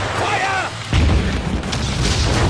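An artillery shell explosion about a second in: a sudden heavy blast followed by a continuing deep rumble.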